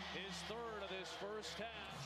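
Faint basketball game broadcast audio: a commentator talking quietly over the arena's background noise, with a steady low hum underneath.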